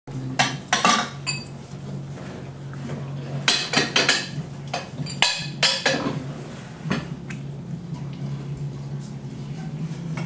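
Ceramic dishes clinking and clattering as they are lifted out of a dishwasher rack and stacked into cupboards, in sharp clusters of clinks in the first second, again around three to four seconds and five to six seconds in, and once more about seven seconds in.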